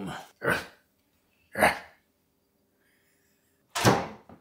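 A person laughing in short, breathy bursts, each about a second apart, then a gap before a sudden sharp sound near the end.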